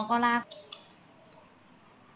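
A woman says a short phrase, then a few light computer-mouse clicks, four or so, spaced unevenly over about a second, over quiet room tone.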